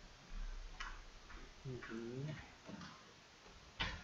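A few scattered clicks and ticks from a computer mouse as a document is scrolled, with a sharper click near the end. A short hummed voice sound comes about halfway through.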